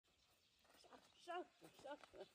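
Faint voices: a short wavering vocal sound about a second in, and another brief one near the end.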